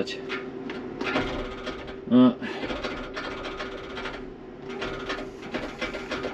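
Forage harvester's starter motor cranking laboriously without the engine catching, a dense mechanical rasping over a steady buzzing tone: the batteries are flat after the machine has stood for a week or more, one of them being worn out.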